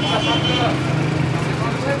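Busy street-market background: people talking over a steady low hum of idling vehicle engines and traffic.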